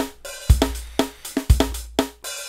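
Programmed drum beat playing back from the AIR Xpand!2 virtual instrument: kick drum, snare and hi-hat in a steady groove, with a hit about every half second.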